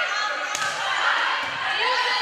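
Volleyball struck twice during a rally, a sharp smack about half a second in and a duller thud near the middle, over players' and spectators' voices echoing in a gym.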